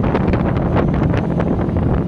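Strong wind buffeting the microphone as a fishing boat runs at speed across the water, with the boat's motor droning steadily underneath.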